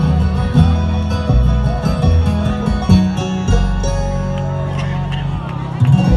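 A live bluegrass band playing with no singing: banjo and guitar picking over upright bass and fiddle. A sustained note is held from about halfway through.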